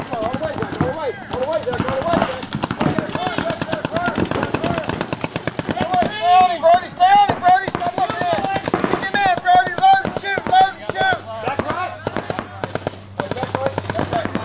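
Paintball markers firing in rapid strings of shots, many per second, with voices shouting over them.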